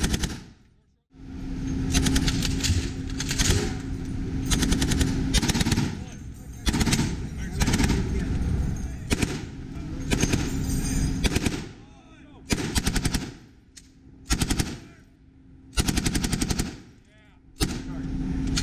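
M240B light machine guns and an M2HB .50-caliber heavy machine gun firing repeated short bursts of rapid automatic fire, with brief pauses between bursts.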